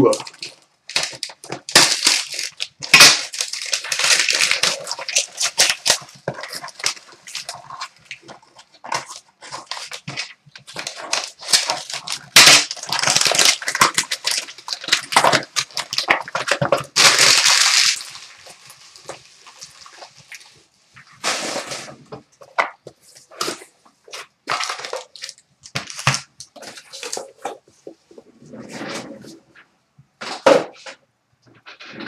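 Gold foil wrapping paper crinkling and tearing as it is stripped off a small cardboard box, in long noisy stretches. Scattered clicks and rustles follow as the box and a stack of trading cards are handled.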